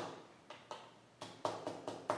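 Stencil brush pounced straight down onto a cardstock stencil and paper, making a few soft, irregular taps.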